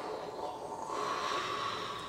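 A person's long, steady, breathy blowing exhale.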